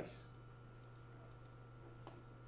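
Near silence with a few faint computer-mouse clicks as a checkbox is switched off, over a steady faint electrical hum.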